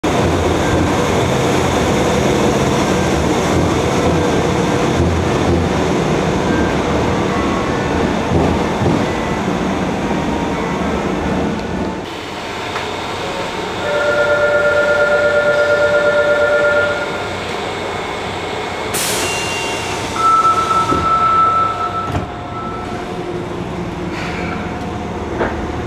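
Fukuoka City Subway 1000N series train at an underground station. For about the first half there is a loud, steady train rumble. The sound then turns quieter, with a pulsing two-tone electronic chime for about three seconds, a brief sharp sound, and a higher pulsing electronic tone near the end.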